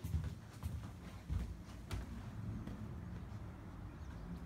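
Footsteps and handling knocks from a handheld phone carried through a sliding glass doorway, a few soft knocks over a low rumble.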